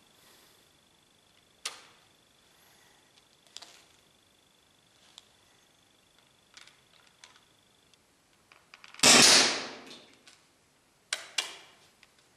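Umarex T4E HDS68 CO2-powered paintball marker fired once about nine seconds in: a sharp pop that dies away over about a second. A few faint clicks come before it, and two sharper clicks follow shortly before the end.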